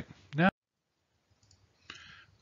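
A single sharp click about half a second in, right after a spoken word, followed by dead silence and a fainter click just before the end.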